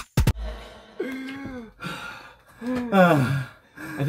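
A young man's voice making drawn-out sighing, gasping sounds whose pitch slides downward, twice, after a last sharp beat of music right at the start.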